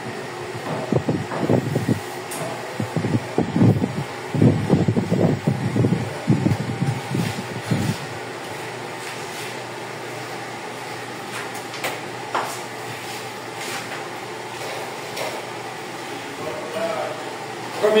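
A steady mechanical hum like a fan running throughout, with indistinct talk over it for the first eight seconds and a few faint light knocks later.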